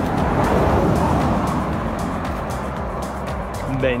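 A car passing on the road, its engine and tyre noise swelling over the first second or so and then fading, with background music underneath.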